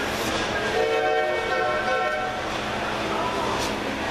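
A train horn from a sound-equipped model locomotive, blown once as a steady chord for about two seconds, heard over crowd chatter.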